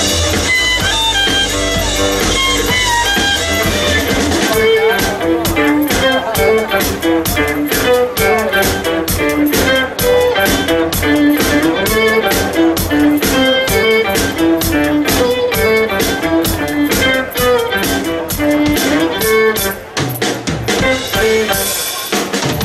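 Live instrumental trio music: steel-string acoustic guitar picking a fast melodic lead over fiddle and a drum kit. A quick, steady drum beat picks up about four seconds in.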